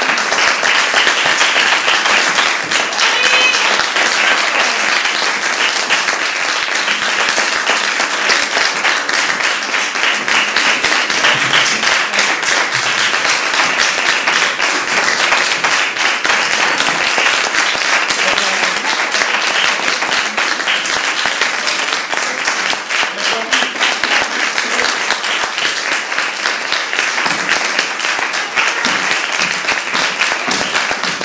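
Audience applauding steadily: dense clapping from many hands that goes on without a break.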